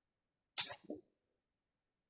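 A person's single short, sharp burst of breath a little over half a second in, lasting about half a second.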